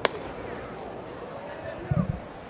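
A 95 mph four-seam fastball popping into the catcher's mitt: one sharp smack right at the start, over steady ballpark crowd murmur.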